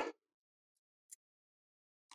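Near silence, with two faint short ticks about a second in.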